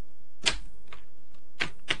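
Four short, sharp clicks at uneven intervals, roughly half a second apart, over a faint steady hum.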